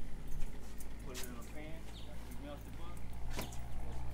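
Low, untranscribed talking from men working on a car, with a few sharp clicks (the loudest about three and a half seconds in) over a steady low rumble.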